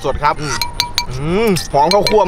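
A man's voice over background music, with a few light clinks about halfway in.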